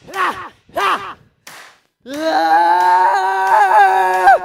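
A singer's voice heard without backing music: two short vocal bursts, each rising and falling in pitch, in the first second. After a brief silence comes one long note held at a steady pitch, sung or yelled.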